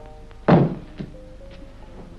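A single heavy thud about half a second in as an object is dropped onto the floor, followed by a lighter knock, over background music.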